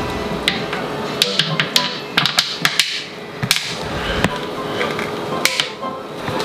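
Background music, with scattered sharp plastic taps and clicks as a plastic funnel is pushed and worked into the neck of a plastic soda bottle.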